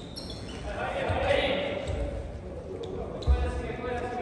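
A basketball bouncing a few times on a wooden gym floor, the loudest bounce a little over three seconds in, echoing in a large hall.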